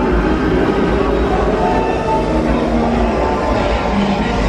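Disneyland Railroad passenger train rolling along the track with a steady low rumble, with music playing faintly over it.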